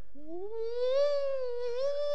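A man imitating an ambulance siren with his voice: one long wail that rises in pitch over the first second, then holds.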